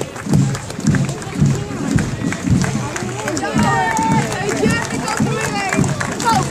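Parade band music with a steady march beat about twice a second, with several people talking close by in the second half.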